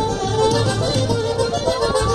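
Traditional Mexican zapateado music playing steadily over the ring.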